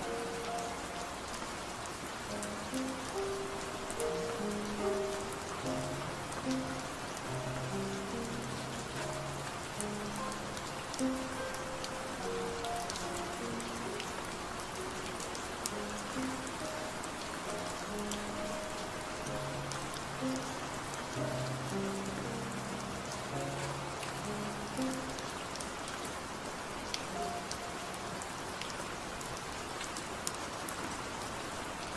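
Steady rain sound with a slow, soft melody of low sustained notes played over it. The notes thin out near the end, leaving mostly the rain.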